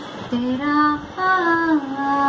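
A young woman singing a Hindi song unaccompanied, holding notes across two short phrases with a brief breath between them.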